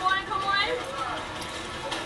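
A person speaking in the first second, then a quieter stretch of steady background noise.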